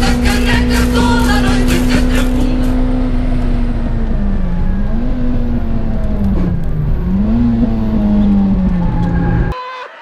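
Hatchback track car's engine heard from inside the cabin, held at high revs, with music over the first few seconds. The revs then dip and climb back twice. The sound cuts off suddenly near the end.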